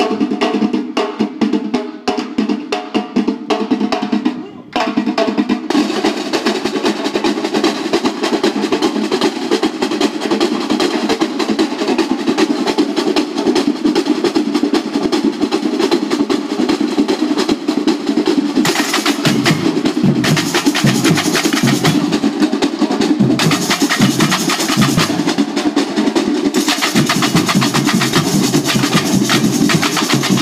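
Samba bateria playing: bass drums (surdos), snare drums, tamborims and jingle shakers together in a dense, steady groove. There is a brief dip about four seconds in. Past halfway, bright jingling and deep bass drum beats come through more strongly.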